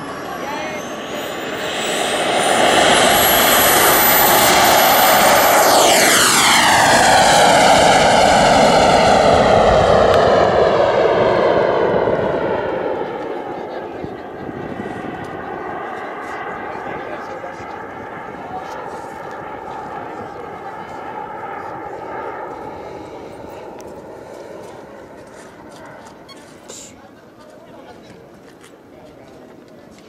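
Turbine engine of a radio-controlled model jet flying past: a high whine builds over the first few seconds and stays loud for about ten seconds, then drops in pitch as the jet goes by. It fades gradually as the jet flies away.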